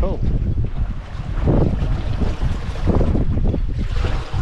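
Wind buffeting the microphone on the deck of a sailboat under sail: a heavy low rumble that swells and eases with the gusts.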